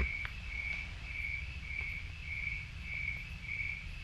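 A cricket chirping steadily, about two high, even chirps a second, over a faint low background rumble.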